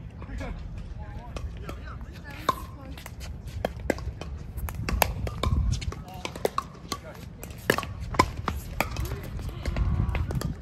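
Pickleball paddles hitting a plastic ball during a rally: sharp, hollow pops at irregular intervals, some louder near ones and fainter ones from further off, over a low rumble.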